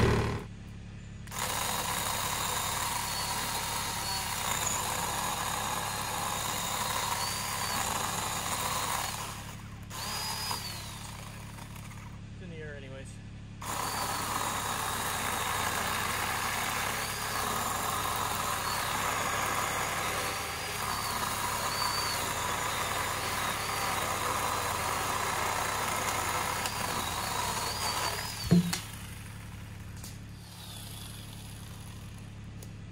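An engine running steadily, broken by a few brief drops where the picture cuts, with faint bird chirps above it and one sharp knock near the end.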